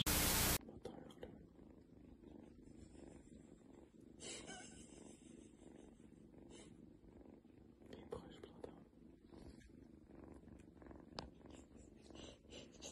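Drowsy kitten purring softly and steadily, after a brief burst of noise at the very start.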